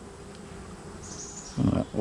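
Honey bees in an opened hive humming softly and steadily, a calm, quiet hum that is taken as a sign the colony is queenright. A brief faint high hiss comes about a second in.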